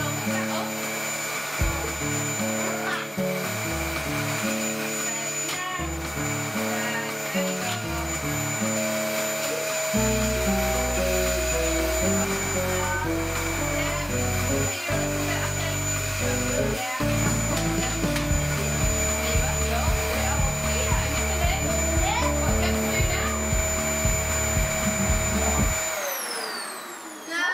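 Background music over a Dyson vacuum cleaner running with a steady high whine, which cuts off at the end as the machine is switched off.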